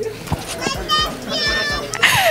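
High-pitched, excited human voices without clear words, wavering and getting louder in the second half.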